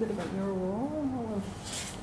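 A woman's voice held in one long drawn-out hum, its pitch rising and then falling back, ending about a second and a half in.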